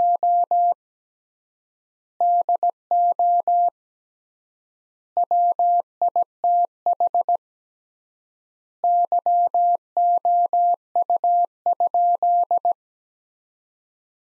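Morse code sent at 17 words per minute as a single steady beep keyed into short and long elements, with extra-long gaps of about a second and a half between words. A word is finishing at the start, then three more words follow, the last ending about a second before the end.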